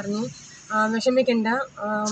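A woman talking, with a short pause about half a second in.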